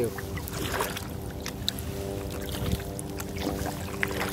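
Kayak paddle strokes: small splashes and drips from the blade as the kayak glides through calm water, with scattered light clicks over a steady faint hum.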